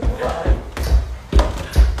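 Footsteps climbing a staircase, heavy low thuds about twice a second.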